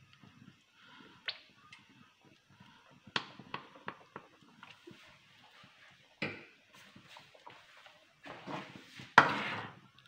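A few faint clinks and taps of a spoon against a kadhai as sauces are spooned into the soup, with a louder tap about six seconds in and a short scraping noise near the end.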